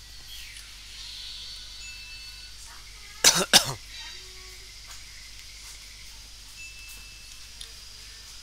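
A person coughing twice in quick succession, two short loud bursts about three seconds in, over faint steady background hiss.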